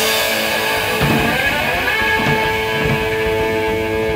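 Gibson electric guitar holding ringing, sustained notes, with a note sliding up in pitch between one and two seconds in, over light drum-kit playing in an improvised rock jam.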